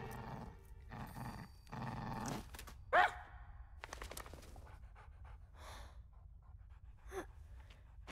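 Dog panting and sniffing in short noisy bursts, then a brief high whine that bends in pitch about three seconds in, and a fainter one near the end.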